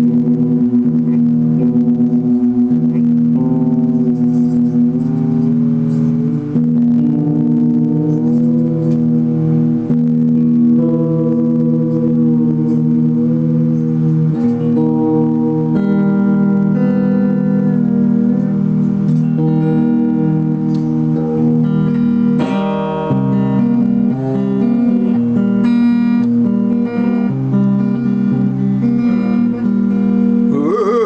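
Guitar music: plucked notes ringing over low, long-held notes that change every few seconds.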